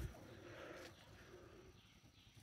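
Near silence: faint outdoor ambience with a faint bird call.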